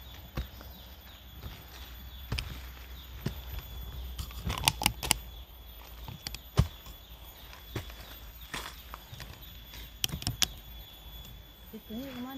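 A small hand hoe chopping into soil to dig a planting hole: dull knocks and scrapes at uneven intervals, the loudest about six and a half seconds in.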